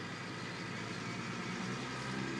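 Tractor diesel engine running steadily under load as it pulls a Carrier Turf CRT-425 turf implement, heard from some distance as an even hum.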